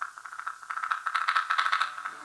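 Rapid rattling percussion over a held high note in folk dance music, the rattle growing louder in the second half.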